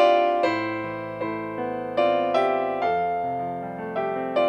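Slow piano music: chords struck every half second to a second, each left to ring and fade.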